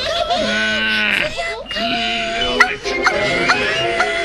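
Cartoon soundtrack: a wavering, bleat-like vocal cry lasting about a second, followed by background music with short high notes and quick pitch slides.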